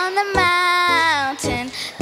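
A young girl singing solo into a microphone, holding long, wavering notes between short breaths.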